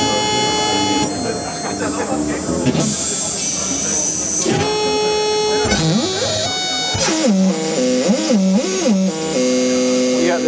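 Prototype Expert Sleepers General CV Eurorack module, a General MIDI sound chip under voltage control, with its drum sounds driven at audio rate so they come out as pitched synth tones. The notes jump between held pitches and swoop down and up in quick bends.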